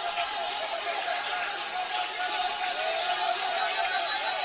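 A congregation praying aloud in tongues all at once, many voices overlapping into a continuous, wavering babble.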